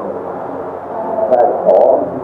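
A low, steady hum of voices, like a droning ritual chant, with a few spoken words over it in the second half.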